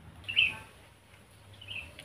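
A small bird chirping twice: a short call about half a second in and a fainter one near the end.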